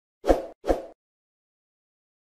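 Two quick pop sound effects from a subscribe-button animation, less than half a second apart, each dying away fast.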